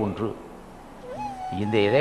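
A man speaking Tamil into a microphone in a drawn-out, sing-song voice. He trails off, pauses about a second, and after a short rising, held tone resumes speaking.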